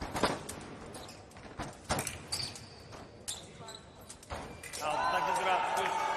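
Fencers' feet stamping and knocking on the foil piste in a string of sharp thuds and clicks during a bout exchange. About five seconds in, a loud held, slightly falling tone with voices over it sets in as the scoring lights go on for a touch.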